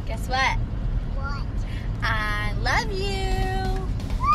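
Wordless, high-pitched voice sounds: short sliding exclamations, then a note held for just under a second near the end, over a steady low rumble.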